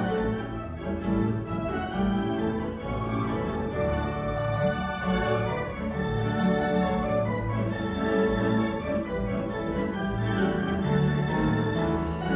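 Theatre organ playing a piece: sustained chords over a steadily moving bass line, with no break.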